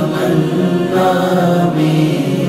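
Wordless vocal chorus of a devotional manqabat holding long, steady notes as a backing drone, with no instruments.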